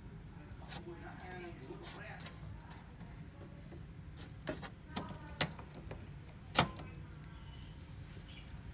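Several sharp clicks and knocks from the opened inkjet printer's carriage and ink-tube parts, the loudest about six and a half seconds in, over a steady low hum.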